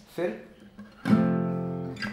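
A chord strummed once on a steel-string acoustic guitar about a second in, then left ringing and slowly fading.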